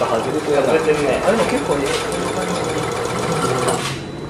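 Shaking table running under a balsa-wood model tower: a fast, steady mechanical rattle.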